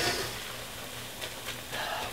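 Faint, steady sizzling of ginger slices cooking in sugar syrup in a stainless steel skillet, the syrup cooked down to a thick, crystallizing stage, with the light scrape of a spoon stirring through it.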